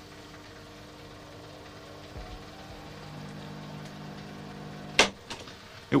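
Microwave oven running, a steady electrical hum that grows louder about three seconds in, with a sharp click about five seconds in.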